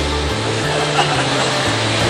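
Background music, its bass notes changing every half second or so, under a steady hiss of room noise.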